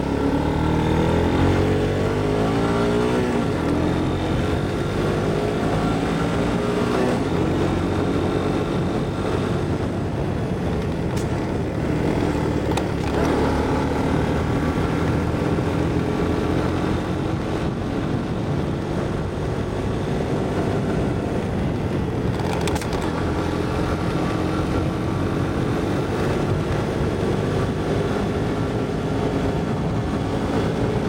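Honda ATC three-wheeler's engine running under way, rising in pitch as it accelerates over the first few seconds, then pulling steadily with a slow climb in pitch.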